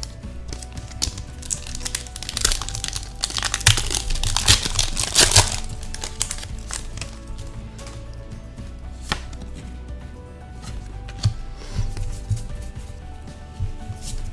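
Foil wrapper of a Pokémon TCG Cosmic Eclipse booster pack crinkling and tearing open, loudest in the first half, then lighter rustling of cards with a sharp click about nine seconds in. Quiet background music runs underneath.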